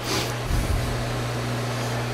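Metal lathe running, its chuck spinning at steady speed: an even motor and drive hum with a constant low tone.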